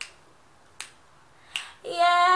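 Finger snaps keeping time, about one every 0.8 seconds, in a gap between phrases of a woman's unaccompanied singing; her voice comes back in at the very end.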